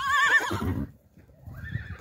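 A horse whinnying: one loud, high, quavering call lasting about a second.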